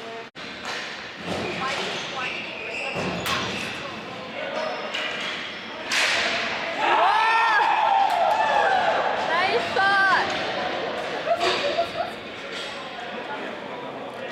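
Ball hockey play with sharp knocks of sticks and ball, then loud yelling and shouts of players and onlookers from about six seconds in, rising and falling for several seconds, as a goal is scored.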